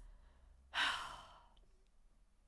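A woman's single audible sigh: one breathy exhale about a second in that fades out within half a second.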